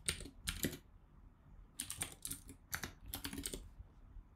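Typing on a computer keyboard: quick runs of keystrokes with a pause of about a second near the start, then several closely spaced bursts.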